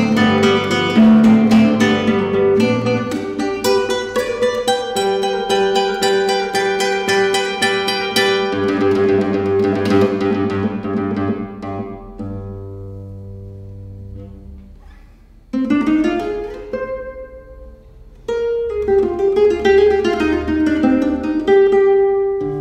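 Solo nylon-string classical guitar played fingerstyle. A dense, fast passage of plucked notes gives way to held notes ringing and fading out about halfway through. After a short phrase and a brief hush, the playing comes back at full strength near the end.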